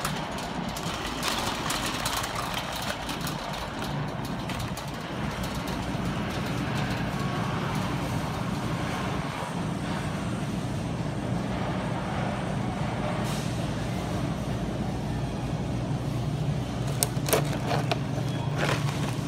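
Grocery store background noise: a steady low hum under an even haze of sound, with a few sharp clicks near the end.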